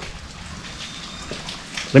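Steady rain falling, an even patter of drops.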